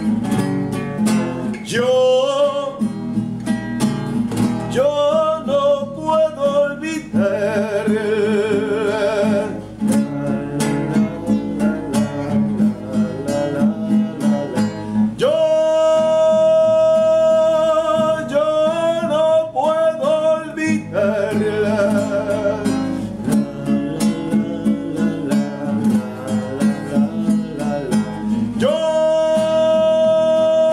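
A man singing with vibrato, holding long notes, while strumming a nylon-string classical guitar in a steady rhythm.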